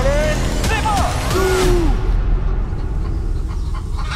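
Several voices shouting and cheering without clear words over a steady low rumble, during a tug-of-war pull. The shouts die away about halfway through, leaving the low rumble.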